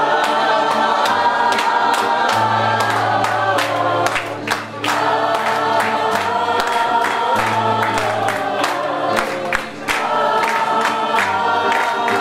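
A women's choir singing with guitar accompaniment and rhythmic hand clapping about twice a second. The singing breaks off briefly twice between phrases.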